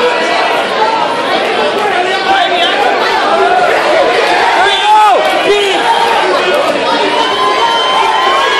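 Crowd shouting and cheering, many voices yelling over one another, with a few loud single shouts about five seconds in.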